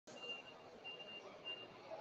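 Faint electronic beeping: three short, high beeps in quick succession over low hall noise.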